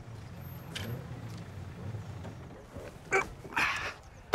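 A van's cab door unlatching with a sharp click about three seconds in, then a short rush of noise as it swings open, over a low steady hum.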